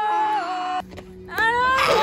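A person's drawn-out playful wail: a held note that falls and breaks off a little under a second in, then a second wail that rises near the end.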